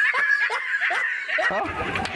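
A person laughing in a quick run of short bursts.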